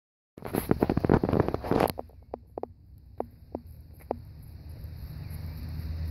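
Scuffling clatter for about a second and a half, then five or six separate sharp knocks: puppies' feet scrambling and stepping on a loose plywood board.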